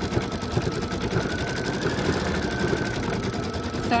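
Brother Essence embroidery machine stitching out a monogram at speed, a fast, even run of needle strokes.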